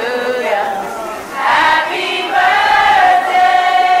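Slow vocal music: voices singing long, sliding notes with no beat or bass, ending on a long held note.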